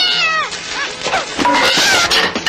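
A high, whining cry that slides down in pitch over about half a second, followed by a few shorter cries that rise and fall, over cartoon soundtrack music.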